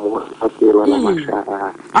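Speech only: a person talking, with pitch rising and falling in phrases.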